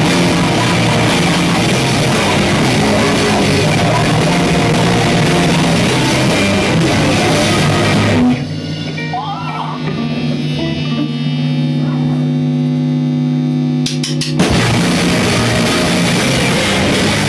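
Live rock band playing loud, with drum kit and guitars. About eight seconds in the drums drop out and only held, ringing notes sound for about six seconds. Then the full band crashes back in near the end.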